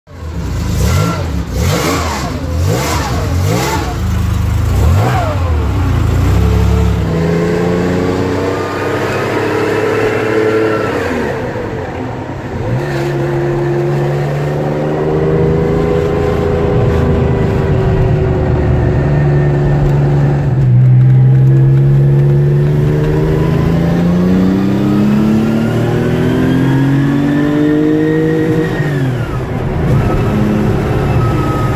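The Porsche 914/6's 2.7-litre air-cooled flat-six, heard from inside the cabin. It revs unevenly for the first few seconds, then pulls hard through the gears in three long rising sweeps, each ended by a drop in pitch at a gear change.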